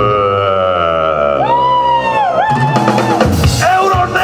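Live rock band with a man singing long, wavering held notes over guitar and bass; drum strokes come back in about halfway through.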